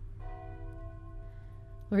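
Distant church bell struck about a fifth of a second in, ringing on with several steady overtones.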